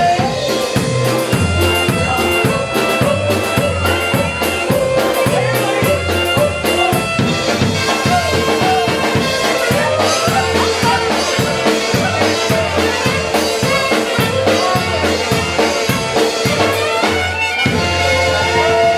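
Live polka band playing: accordion, violins, trumpet and drum kit over a steady, evenly pulsing bass beat.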